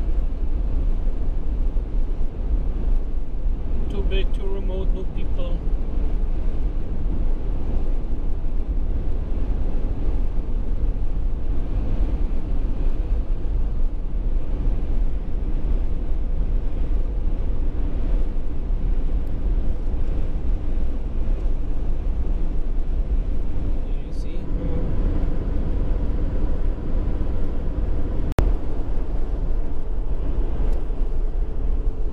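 Steady low rumble of a car's engine and tyres at road speed, heard from inside the cabin, with a single sharp click near the end.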